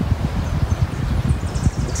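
Wind rumbling on the microphone, with rustling of leaves and brush. A faint high buzz comes in during the second half.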